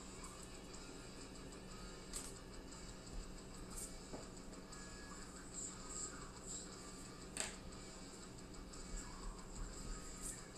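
Faint background music with a few sharp taps, about two, four and seven and a half seconds in, and light pencil strokes on paper.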